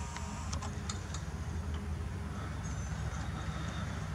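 Steady low outdoor rumble, with a few faint clicks in the first second or so.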